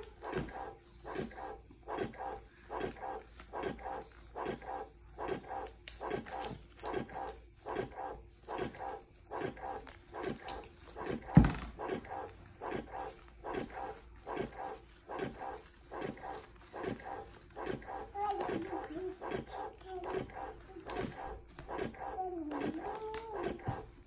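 Electric breast pump running, a rhythmic suck-and-release cycle about twice a second. A single sharp knock comes about halfway, and a young child's voice joins near the end.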